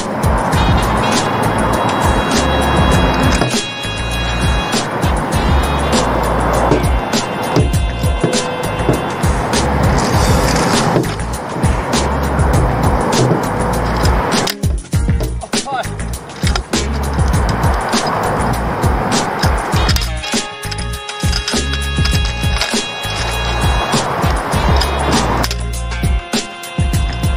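Freeline skates' small wheels rolling over skatepark concrete in repeated runs of a few seconds, with sharp clacks and knocks as the skates hit the rail and ramp edges. Music plays underneath.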